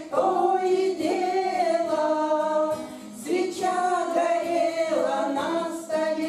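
A group of women singing a bard song together in long held, wordless notes, with a new phrase starting about three seconds in.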